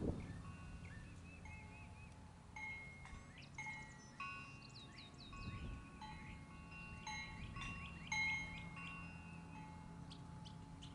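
Wind chimes ringing, a few chime tones struck one after another and overlapping as they ring on, with birds chirping in short falling calls over them.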